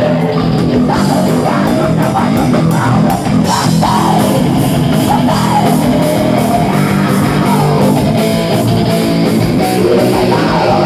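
Live rock band playing loud, heavy rock on stage: distorted electric guitar with bending lead notes over bass guitar and a steady drum beat.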